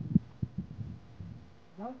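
Irregular low thumps and rumble on the microphone, strong at first and fading away over the first second and a half. A man says "No, okay" at the end.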